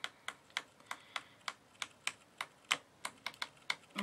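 Pages of a paper pad being flipped one after another: a quick, fairly even run of light clicks, about four a second.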